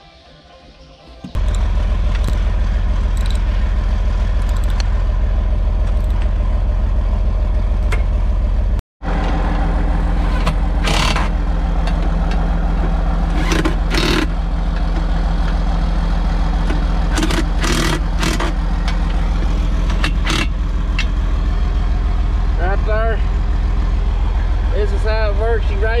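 John Deere 4640's six-cylinder diesel engine running steadily, coming in suddenly about a second in. Over it come several short bursts of a cordless impact driver tightening the seat-mount bolts.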